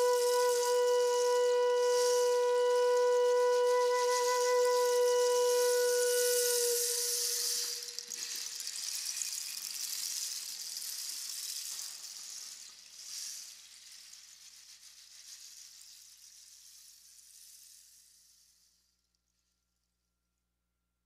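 Closing music: one long, steady flute note that ends about seven seconds in. A soft, high hissing wash carries on after it and fades slowly away to silence near the end.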